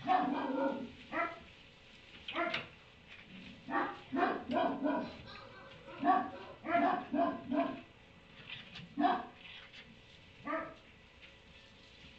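A dog barking and yipping in short runs of quick barks, with pauses between the runs.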